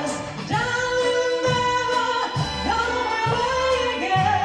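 Live stage-musical performance: a soprano sings long held notes over an orchestra, with a male chorus joining in.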